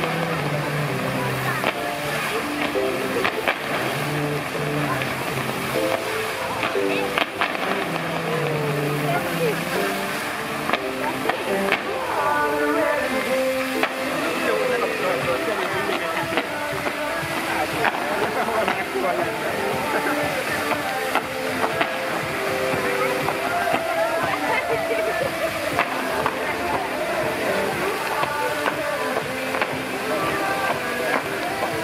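Pop music playing over a musical fountain's loudspeakers, with a voice-like line in it from about twelve seconds in. Behind it runs the steady hiss of the fountain's water jets.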